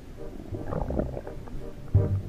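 Soundtrack of short, low burbling notes.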